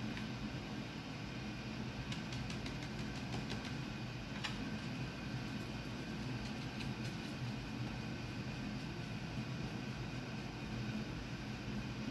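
Steady low room hum, like an air conditioner or fan running, with a few faint light clicks and taps between about two and four and a half seconds in as a paintbrush is rinsed in a foam cup of water.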